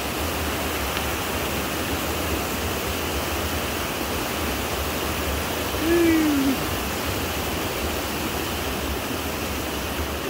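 Steady rush of water from a rocky creek, an even hiss with no pauses. About six seconds in, a person's voice makes one short sound over it.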